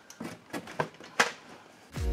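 A handful of light knocks and clicks of plastic toy blasters and bins being handled, the loudest a little past the middle.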